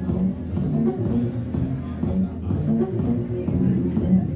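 Live techno played on electronic instruments: a looping bass pattern repeats steadily, and faint regular high ticks join it about a second and a half in.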